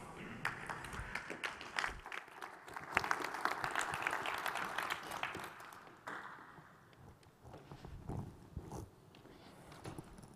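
Audience applauding. The clapping builds about three seconds in and dies away at about six seconds, leaving a few soft knocks and shuffles.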